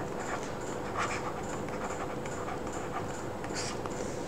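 Steady background hiss with a faint hum and a couple of soft taps: the room and microphone noise under a pause in a recorded talk.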